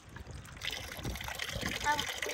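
Water poured from a plastic tub onto stretched plastic sheeting on a homemade rainwater catcher, splashing and running off, starting about half a second in.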